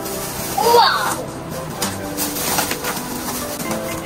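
A brief high-pitched child's vocal sound about a second in, followed by a few small clicks of plastic toy capsules being handled.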